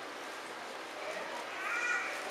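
Quiet room tone with a faint, high-pitched voice in the second half making a short, slightly rising call.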